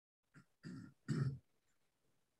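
A person clearing their throat: three short vocal bursts within about a second, the last the loudest.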